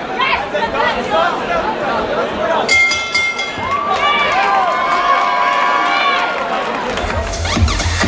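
Crowd chatter and shouting in a large hall, then about three seconds in music cuts in sharply over it, with a melodic line and a heavy dance bass beat entering near the end.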